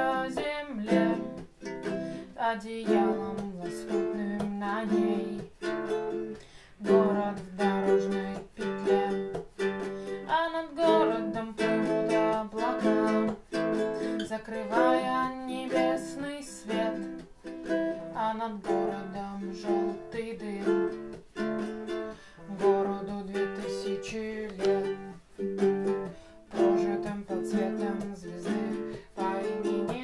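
Flight GUT 350 guitalele strummed in a steady rhythm, chords ringing from its mix of nylon and metal-wound strings.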